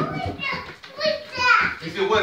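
A young child's high-pitched voice calling out in a few short cries without clear words, the loudest about one and a half seconds in.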